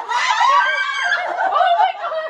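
Two women laughing loudly and high-pitched.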